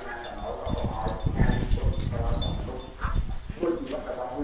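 Oxen eating fresh-cut grass at a wooden feed trough: irregular rustling and munching as the grass is pulled and chewed, busiest in the middle of the stretch.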